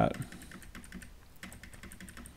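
Computer keyboard keys tapped in a quick, irregular run of light clicks: the arrow key being pressed over and over to skip a video forward in five-second jumps.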